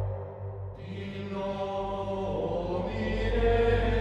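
Background music: a choir chanting in the style of Gregorian plainchant over a steady low drone. The voices come in about a second in and swell toward the end.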